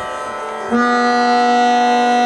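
Harmonium holding sustained reed chords, raga Ahir Bhairav voiced as chords rather than single melody lines. About two-thirds of a second in, a new, louder chord sounds and is held.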